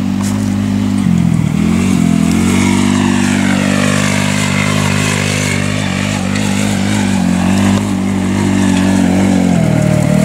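Small engine of an off-road go-kart buggy driving across grass, running at a steady pitch with a brief dip just after a second in and a drop near the end as it slows.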